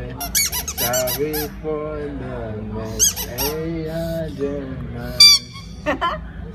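Rubber squeak toy squeaked by a puppy chewing on it: a quick run of sharp, high squeaks about a second in, another around three seconds, and the loudest single squeak near the end.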